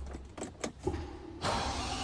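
Three sharp clicks of controls being operated in the cabin of a Land Rover Defender 110, then a steady low hum that steps up about one and a half seconds in as the car's systems power up before starting.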